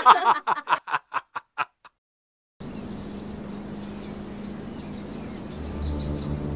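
Short choppy voice fragments that stutter and die away, a brief dead silence, then steady outdoor background noise with a low hum and faint small-bird chirps.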